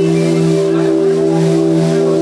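Live band music: a loud, steady held chord with a keyboard-organ sound, without singing.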